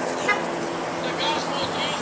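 Outdoor street ambience: steady traffic noise with faint voices of people in the background and a short click about a third of a second in.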